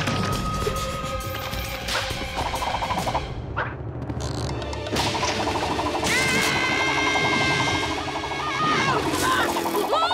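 Fast cartoon action music laid under slapstick sound effects: sharp crashes and smashing impacts, including wood breaking, plus a rapid rattling run of hits. A long held high note sounds through the second half.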